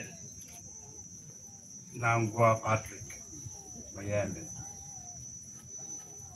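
Steady high-pitched insect trill, with a few short bursts of a man's voice through a microphone about two and four seconds in.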